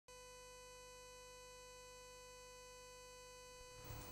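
Near silence but for a faint, steady electrical hum: one unchanging pitched tone with overtones. Music begins to swell in just before the end.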